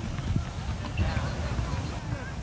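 Uneven low rumble of wind buffeting the camera microphone outdoors, with faint distant voices from about a second in.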